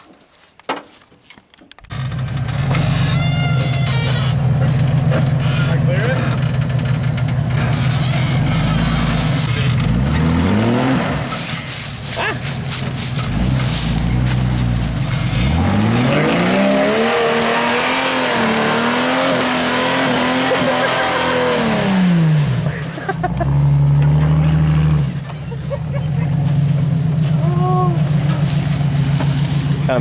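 Jeep Wrangler YJ rock crawler's engine working under load as it climbs a steep dirt slope, with a steady low drone. Around the middle it revs up, holds high for several seconds, then drops back. Before the engine comes in there are a few quiet clicks.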